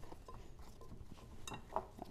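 Faint handling sounds of gloved hands kneading soft pastry dough in a glass mixing bowl, with a light click about three-quarters of the way in.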